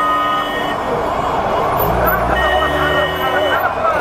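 Street traffic: a held vehicle horn note that stops about half a second in, then a heavy vehicle's engine rumble with another held horn from about two seconds in, over background voices.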